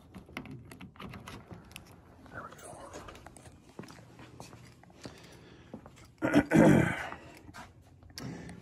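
Rustling and small knocks of a phone being carried and handled. About six seconds in comes a brief, loud vocal sound.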